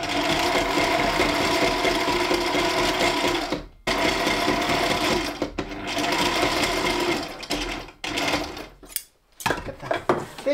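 Sailrite heavy-duty sewing machine straight-stitching through about a quarter inch of thick leather layers, near the limit of what it can sew. It runs steadily in three spells, stopping briefly at about four seconds and again a second and a half later, then easing off about two seconds before the end.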